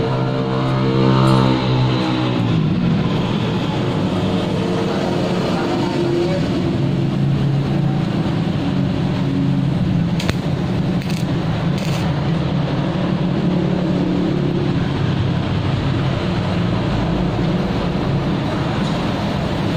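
A steady, loud, low machine drone with a steady pitch. Three short sharp clicks come around ten to twelve seconds in.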